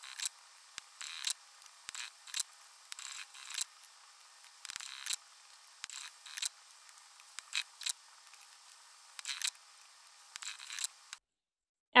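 Work at a sewing machine as fabric is fed under the presser foot: a string of irregular clicks and rustles.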